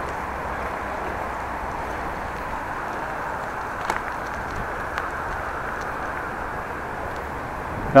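Steady rushing noise of a bicycle being ridden along a street, with two faint clicks about four and five seconds in.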